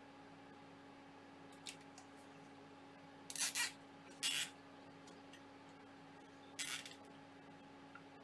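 Plastic zip tie being pulled through its locking head in four short zips: two together in the middle, one just after, and one near the end.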